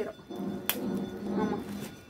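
A quiet stretch with a low steady hum and faint background voices; the open fire burning in a metal bucket gives one sharp crack about two-thirds of a second in and a fainter one near the end.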